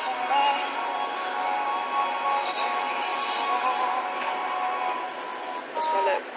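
A song with a singer, played back through a phone's small speaker. The notes are held and steady, with little bass.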